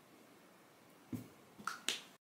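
Makeup items handled on a tabletop: a soft knock about a second in, then two sharp clicks close together near the end.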